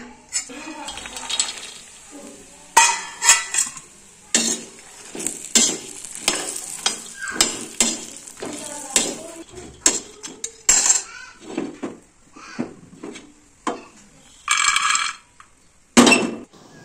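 Steel spoon scraping and clinking against a hot iron tawa as makhana (fox nuts) are stirred and roasted, with a faint sizzle under the repeated scrapes. A short louder burst comes near the end.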